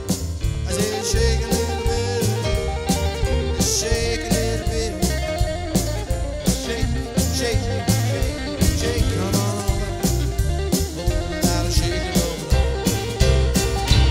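Live rock-and-roll band playing an instrumental stretch of a boogie-woogie number: electric guitar over a drum kit with a steady, driving beat.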